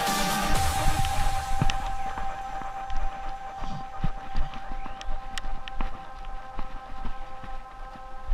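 Electronic background music fading out over the first couple of seconds, then irregular footsteps and scuffs on artificial turf as a player spins round on the spot, over a steady high whine.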